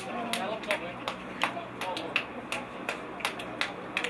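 Hand clapping from a few people in a steady rhythm, about three claps a second, with faint voices underneath.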